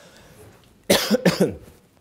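A man coughs twice in quick succession, about a second in.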